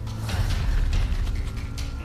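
Soundtrack effect of creaking, grinding machinery over a deep, steady low drone, with background music underneath.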